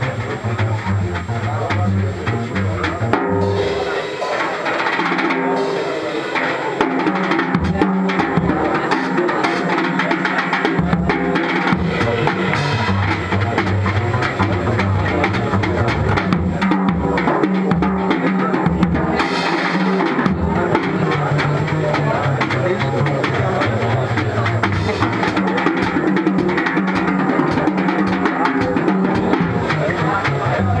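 Live swing jazz on drum kit and double bass: the drums play throughout, and the double bass drops out in stretches in the first dozen seconds, leaving the drums alone, before walking steadily underneath.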